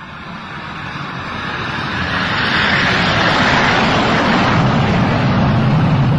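Jet airliner engines growing steadily louder for about three seconds as the plane approaches, then holding at a loud, even rush.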